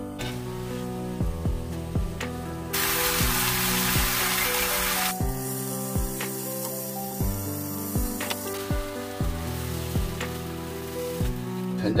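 Marinated galbi ribs sizzling on a hot griddle pan, loudest for a couple of seconds about three seconds in and then settling lower. Background music with a steady beat plays under it.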